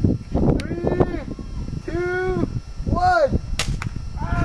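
A pump-up air gun fires once near the end, a sharp crack followed closely by a second click.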